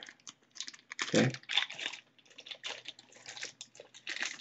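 Irregular light crinkles and clicks of a clear ziploc-type plastic package being handled.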